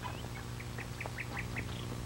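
A bird calling: a quick run of about five short, high chirps, about five a second, over a steady low hum in the soundtrack.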